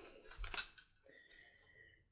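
Faint rustling and a few light clicks as gloved hands handle a cloth-wrapped leather-dye block fastened with a metal binder clip, with a faint thin high tone in the second half.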